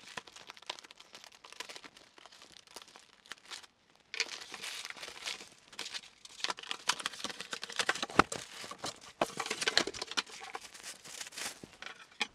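Plastic mailer bag crinkling and rustling as it is cut open with a pocket knife. After a short gap about four seconds in, louder, denser crinkling, rustling and scraping of packaging as the cardboard-wrapped tray is unpacked.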